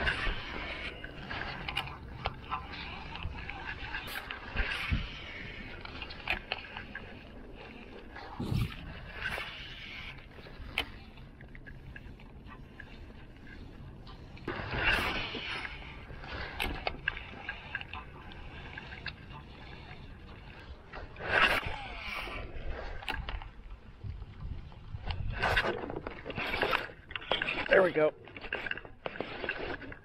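Handling sounds from fishing out of a kayak: scattered clicks and knocks from the rod, reel and gear against the hull, with a few louder scuffing bursts, over a faint steady outdoor background.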